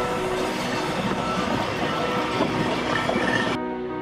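Blackpool illuminated tram passing close by on the promenade track, its wheels running on the rails with a steady, noisy rolling sound, with music playing alongside. About three and a half seconds in, the sound cuts abruptly to music alone.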